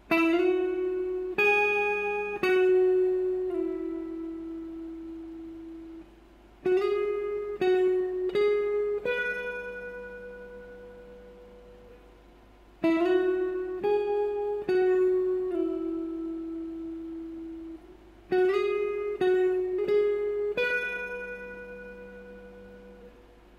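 Clean electric guitar, a Stratocaster-style instrument, playing a single-note intro lick. The lick is a short phrase of picked notes, some slid up into, played four times with the second and fourth answering the first and third. Each phrase ends on a long note that rings out and fades.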